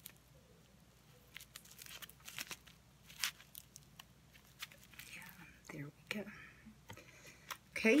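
Clear plastic bag of dried leaves handled, giving soft, irregular crinkles and small crackles.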